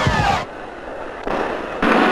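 Fireworks: several whistling rockets over crackling bangs, cut off sharply about half a second in. A quieter noise follows, and music comes in near the end.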